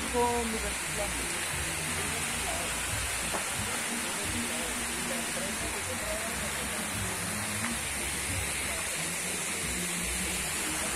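Small rocky creek running: a steady rush of water over stones, with faint voices in the background.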